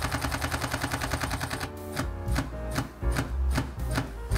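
Olympus E-M5 Mark III shutter firing a continuous high-speed burst as a rapid, even run of clicks. A little under two seconds in, the clicks slow and turn uneven as the camera's buffer fills with raw files written to a UHS-I card.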